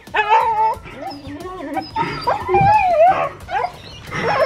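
Siberian huskies vocalizing in a string of short cries that waver up and down in pitch, with one longer wavering cry past the middle, during rough play between an adult husky and a puppy.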